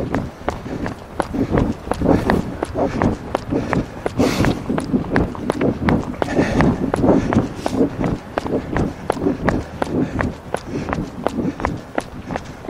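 Running footsteps on a park trail, a steady stride of about three footfalls a second, recorded on a runner's wind-filtered microphone.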